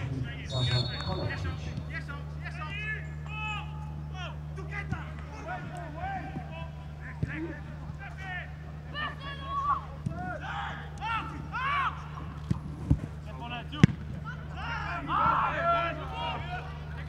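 Footballers shouting and calling to each other on the pitch, with several sharp kicks of the ball; the loudest two kicks come close together near the end. A steady low hum runs underneath.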